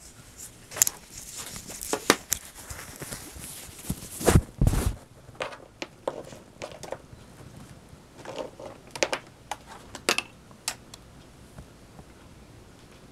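Handling noise of a tablet being held and moved: irregular taps, clicks and rubbing against its case, with a louder bumping thump about four and a half seconds in.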